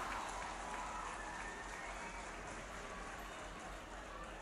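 Faint scattered applause from a small crowd after a point is scored, dying away slowly.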